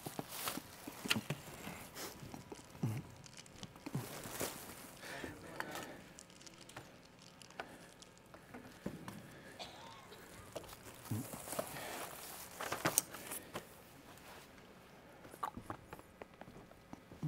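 Faint handling sounds: a plastic sheet rustling as it is lifted off a clay slab and carried, with footsteps and scattered light knocks of objects on a table.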